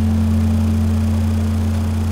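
The band's final low chord held as one steady drone, easing off slightly near the end.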